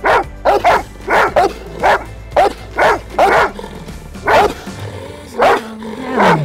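A dog barking in a quick, repeated run, about two barks a second, with a short pause near the end.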